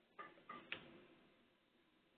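Near silence on a phone-conference line, with three faint short clicks in the first second.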